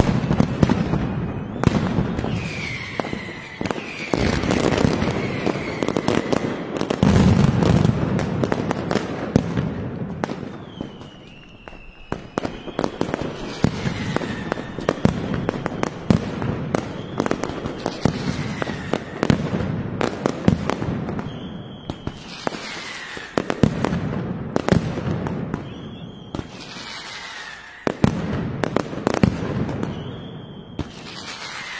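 Mascletà firecrackers going off in a dense, continuous barrage of sharp bangs, with whistling rockets falling in pitch cutting through again and again. The barrage thins briefly about a third of the way in, then picks up again with more whistles and bangs.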